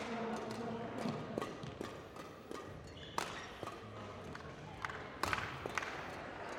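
Badminton rackets striking a shuttlecock in a pre-match knock-up rally: sharp cracks at irregular intervals of roughly one to two seconds, the loudest about three seconds in and a quick cluster a little past five seconds, over the murmur of voices in a large sports hall.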